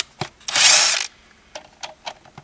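A cordless drill with a socket on an extension backs out a dashboard trim screw. There are a few sharp clicks, then a loud half-second burst of the driver working the screw near the middle, then more light clicks.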